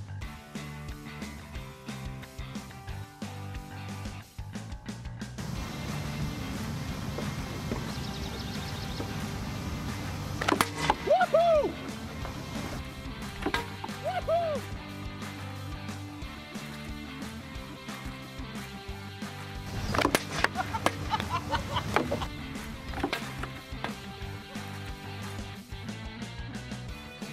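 Guitar background music with a steady beat, over which thrown objects strike a tempered glass railing panel with sharp knocks in two clusters, about ten seconds in and again about twenty seconds in, without breaking it.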